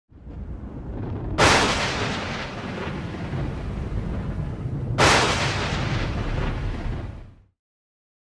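Intro sound effect of booming explosion-like hits over a low rumble. The first loud hit comes about a second and a half in and the second about five seconds in, and each fades out slowly. It cuts off about half a second before the end.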